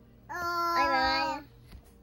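A young girl's voice giving one long, drawn-out sing-song call that lasts about a second, starting shortly in.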